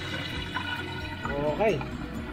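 Pork adobo deep-frying in oil in a frying pan under a glass lid, a steady sizzle.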